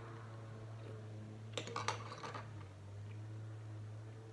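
A metal spoon is set down into a glass tumbler of iced drink. It clinks against the glass and ice several times in quick succession about halfway through, over a steady low hum.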